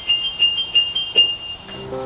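Electronic keyboard played with a piano sound: a quick flurry of repeated high notes, then lower held notes come in near the end.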